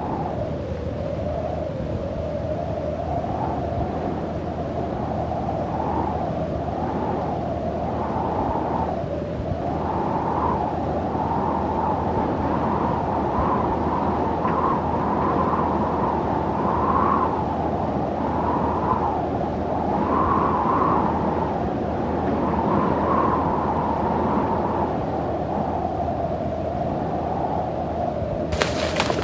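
Wind blowing steadily, a whooshing rush with a hollow tone that swells and eases every second or two.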